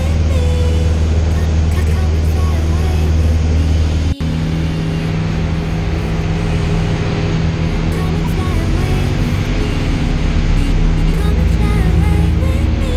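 Light aircraft's piston engine droning steadily, heard inside the cabin, with music playing over it. The drone breaks off for an instant about four seconds in and comes back with a different low tone.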